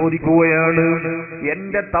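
A man's voice through a microphone, chanting a drawn-out melodic phrase with one long held note, then breaking into a few short syllables near the end.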